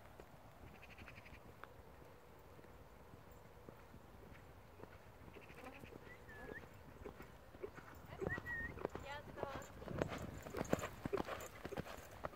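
Near silence at first, then the hoofbeats of a racehorse galloping on a sandy track, growing louder over the second half as it comes up and passes close.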